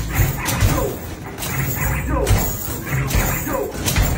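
Basketballs being shot rapidly at an arcade basketball machine, thudding against the backboard and rim about once a second. Short falling tones come between the thuds.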